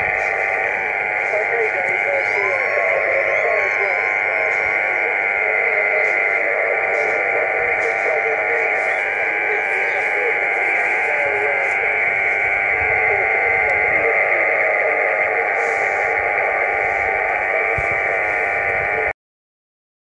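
Yaesu FT-817 shortwave transceiver's speaker on 17 m sideband putting out a steady buzzing noise with fixed tones, interference from a nearby plasma TV that swamps the band; a weak voice wavers faintly underneath. It cuts off suddenly near the end.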